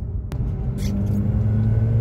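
Car engine and road rumble heard inside the cabin while driving, with a steady droning engine note through the second half and a single sharp click just after the start.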